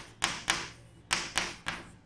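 Chalk tapping on a chalkboard as figures are written: about five short, sharp strokes at an uneven pace.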